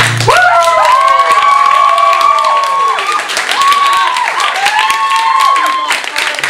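Audience applauding at the end of a song, with several people cheering in long, high whoops over the clapping.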